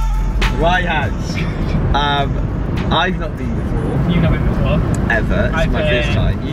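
Steady low rumble of road and engine noise inside a moving car's cabin, with voices and vocal sounds over it.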